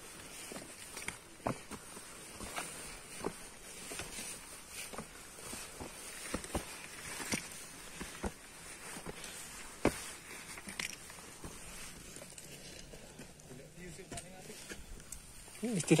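Footsteps and the taps of a trekking pole on a dry, grass-strewn dirt trail, one soft crunch or tap roughly every second, thinning out near the end.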